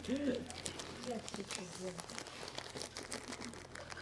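Homeopathic medicine packaging being handled at a table: soft crinkling with many small clicks as the pills are sorted out, under faint murmuring voices.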